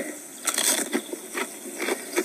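Crunching of a ridged Ruffles potato chip being bitten and chewed: a loud crunch about half a second in, then two smaller crunches near the end, heard through a television speaker.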